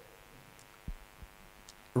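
Faint steady electrical hum, with a soft low thump about a second in and a fainter one shortly after.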